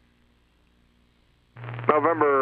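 Near silence on the aircraft's radio feed for about a second and a half. Then an incoming transmission opens suddenly with a steady hum, and an air traffic controller's voice starts just before the end.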